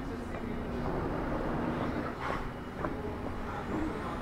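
Town street ambience: a steady low rumble of road traffic, with faint distant voices.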